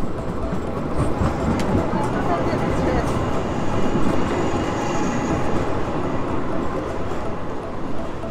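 A modern street tram passing close by on its tracks, its running noise swelling around the middle with a faint high whine, over the voices of passers-by.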